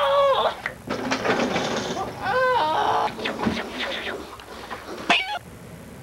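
A person's high, wavering wordless cries, several in a row, with a short burst of noise between them about a second in; the cries stop with a sharp shriek just after five seconds.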